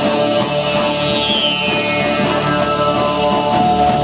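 Live rock band playing, with electric guitars and bass in a dense, steady wall of sound. A high note slides down during the first second and a half.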